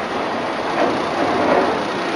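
Vaporetto (Venetian water bus) heard from on board while underway: its engine running steadily under a constant rush of water along the hull.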